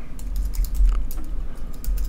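Typing on a computer keyboard: a quick, irregular run of keystrokes as a line of code is edited.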